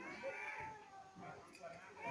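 A faint, high-pitched, whiny voice whose pitch arches up and down, heard at the start and again near the end.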